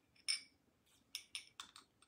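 Sharp knocking raps: one, then a quick run of four about a fifth of a second apart, with a bright, slightly ringing edge. This is a knock at a door.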